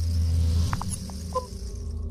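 Logo-intro sound effects: a low rumbling swell with a high hiss that builds to a peak and eases off under a second in, followed by a few short blips and a quick two-note chirp a little after a second in.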